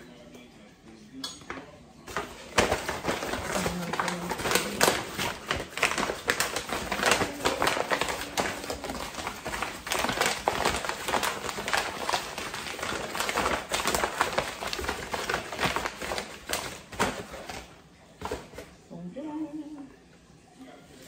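A brown paper bag rustling and crinkling in someone's hands as it is handled and folded up. The crinkling starts about two seconds in, runs irregularly and fades out near the end.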